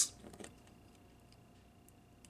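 Faint small plastic clicks and ticks from an action figure's head joint being turned by hand, a few in the first half second and one near the end, over a faint steady whine.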